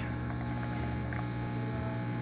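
Heat exchanger espresso machine's pump running during a shot extraction, a steady low hum.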